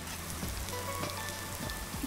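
Chopped garlic and ginger sizzling gently in hot olive oil in a nonstick frying pan, a soft steady crackle.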